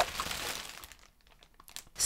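A whoosh transition sound effect: a sudden noisy swish that fades away over about a second, followed by near silence.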